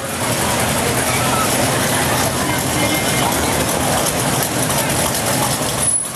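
Hot rod and classic car engines running at low speed as the cars creep past in a slow cruise, with the voices of a crowd of onlookers mixed in.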